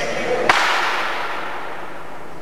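A single sharp crack about half a second in, ringing on in the hall's echo, from a shot fired at a target disc in flight, over murmuring voices.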